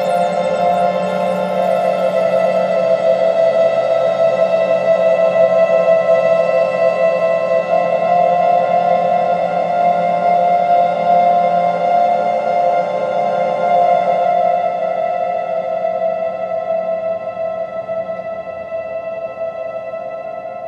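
Ambient electronic music played from a laptop: a steady drone of held tones with no beat, gradually fading out over the second half.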